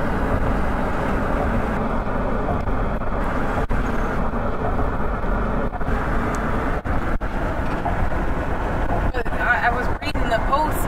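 Steady road and tyre noise heard from inside a moving car crossing a suspension bridge, with the engine running underneath. The noise dips briefly a few times.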